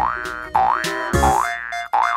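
Cartoon 'boing' sound effects: three quick rising glides about half a second apart, with a dull thump about a second in, over light background music.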